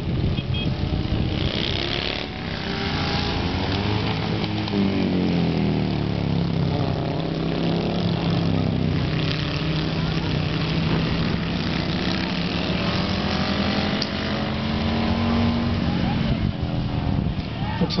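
Hooligan-class chopper and bagger motorcycles racing on a dirt flat track, their engines running hard without a break and rising and falling in pitch as the bikes go through the turns and pass by.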